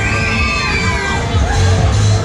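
Riders shouting and screaming together as a Miami-type fairground ride swings its seats up, over loud ride music. The shouts come in waves.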